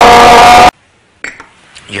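A very loud, heavily distorted burst of shouting cuts off suddenly within the first second. After a short gap come a few faint clicks, and then a man starts to speak.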